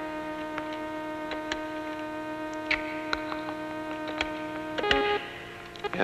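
A steady hum at one fixed pitch with overtones, cutting off suddenly about five seconds in, with a scattering of faint clicks over it.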